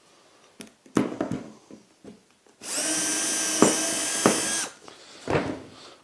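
Cordless drill running steadily for about two seconds at a constant speed, drilling through a part-drilled hole in a workbench top through a drill guide. A few light knocks of the guide being placed come before it, and a single low thump follows as it stops.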